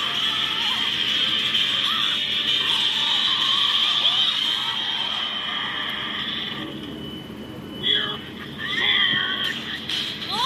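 Animated film soundtrack played from a computer's speakers and picked up by a phone: character voices over music and sound effects, thinning out briefly about seven seconds in before louder bursts near the end.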